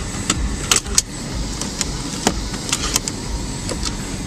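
Light plastic clicks and knocks from a car's dashboard trim and pop-out cup holder being handled, scattered through the whole stretch, over a steady low rumble.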